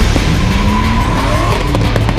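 Drift car's engine revving, its pitch rising, while the rear tyres squeal steadily in a sideways slide.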